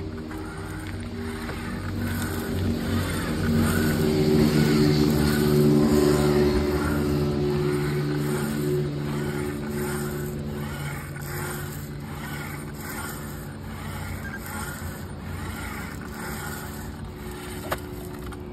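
A motor vehicle engine running steadily at an even, low pitch, growing louder over the first five seconds and then slowly fading.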